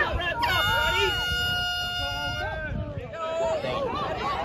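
An air horn sounding one steady blast lasting about two seconds, over crowd chatter.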